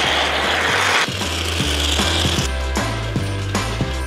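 Aerosol can of polyurethane spray foam hissing as foam is sprayed out through its straw nozzle, in two spells that stop about two and a half seconds in. Background music with a steady bass runs underneath.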